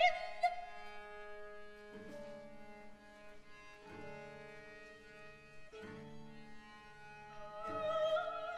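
Soft sustained chords from a chamber string ensemble with cello, held notes shifting to a new chord about every two seconds. Just before the end a singer comes back in.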